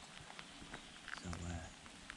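Light rain: faint, irregular ticks of drops over a low hiss.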